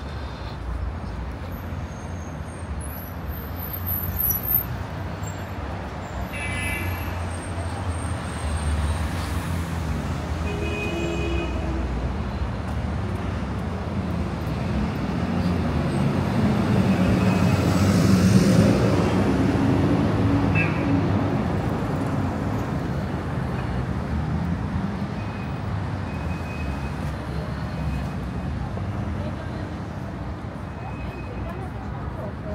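City street traffic heard from the sidewalk, a steady low rumble of passing cars, swelling to its loudest about two-thirds of the way through as a bus goes by close at hand. Passersby's voices come through now and then.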